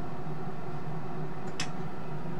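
Steady low hum with a light hiss, and one short click about one and a half seconds in as the soldering iron is put down.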